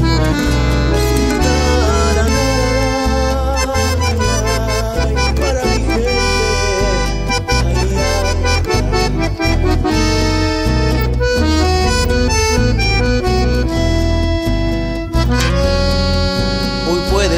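Instrumental break in a Latin American folk song: an accordion plays the melody over guitar and a bass line that changes note every beat or so.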